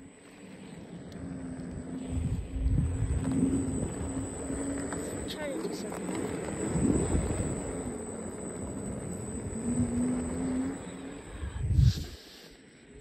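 Wheels rolling over an asphalt road: a low rumble with a faint steady hum that comes and goes, ending in a sudden loud knock.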